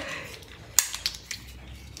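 A few light clicks and taps over quiet room tone, the loudest a sharp click a little under a second in.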